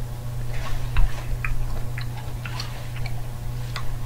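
Eating a salad from a plate: a utensil clicking against the plate and chewing, with a handful of sharp ticks scattered through, the loudest about a second in. A steady low hum runs underneath.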